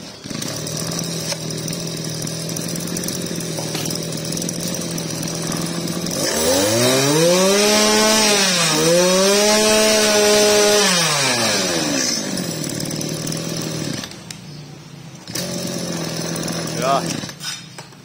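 Small 24cc two-stroke brush cutter engine starting about half a second in and idling steadily. About six seconds in it is revved up twice, with a brief dip between the two, and it settles back to idle about twelve seconds in. Near the end it goes quiet for about a second, then idles again.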